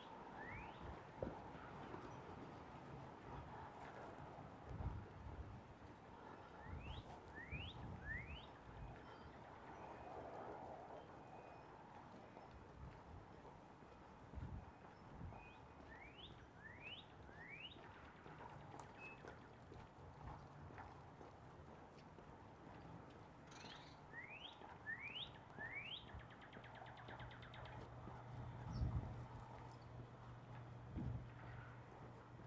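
A songbird singing faintly: a phrase of three quick rising whistles, repeated about every eight seconds, over quiet street background with a few low thumps.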